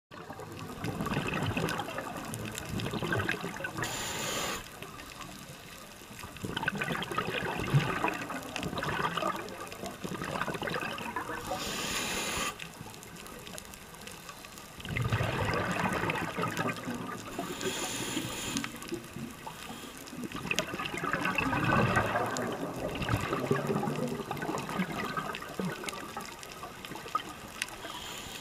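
A scuba diver's regulator breathing underwater. Short high hisses come on the inhalations, at about 4, 12 and 18 seconds in. Long, loud bursts of bubbles follow each exhalation, several seconds at a time.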